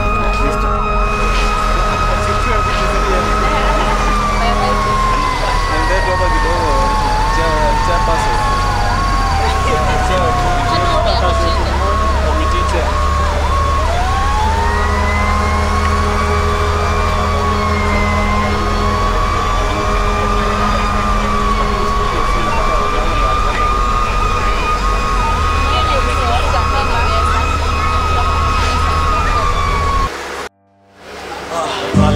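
Emergency-vehicle siren sounding continuously. Its main tone holds, slides slowly down in pitch over about ten seconds, sweeps quickly back up and holds again, while a second, rapidly pulsing siren tone runs alongside.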